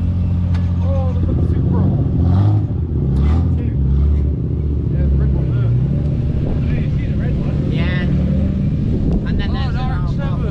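Toyota Supra Mk4's straight-six engine running at low revs as the car pulls slowly away: a steady drone for about the first second, then the revs climb and dip unevenly. People's voices come over it near the end.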